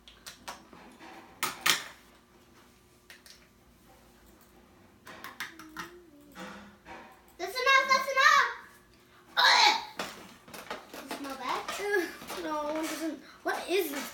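High-pitched girls' voices, loudest in the second half, with a few sharp clicks and taps early on as plastic containers are handled on a table.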